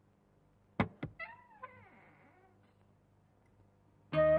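Two sharp knocks about a quarter second apart, then a short, quieter animal cry that wavers up and down in pitch, meow-like.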